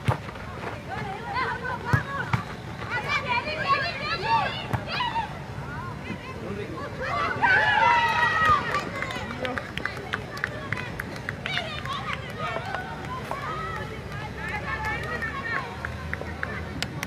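Shouts and calls from players and spectators during a football match, rising to the loudest burst of shouting about halfway through, over a background of crowd chatter.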